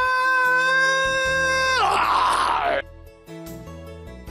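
A man's long, loud yell held on one high note, which drops in pitch and breaks into a raspy noise about two seconds in. After about three seconds it gives way to quiet, soft background music.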